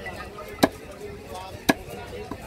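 A heavy cleaver chops through a barracuda onto a wooden stump block: two sharp chops about a second apart.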